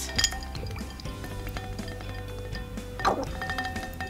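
Ice cubes clinking against a glass bowl of iced water as a small plastic doll is dunked and moved about in it, with a few sharp clinks, one just after the start and one about three seconds in. Background music plays throughout.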